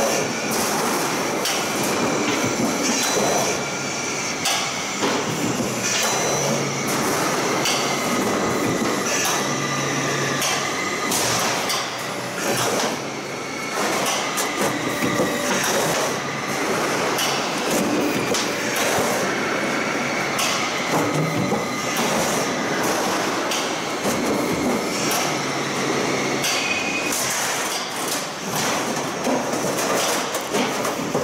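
Steel roof-tile roll forming machine running: a steady mechanical clatter from the roller stands and drive, broken by frequent, irregular sharp metallic clanks.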